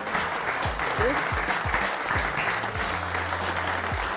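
Applause, steady clapping throughout, over background music with a low bass line and beat.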